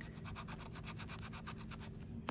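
Scratch-off lottery ticket being scratched with the edge of a handheld scratching tool, scraping off the latex coating in quick, even strokes about ten a second.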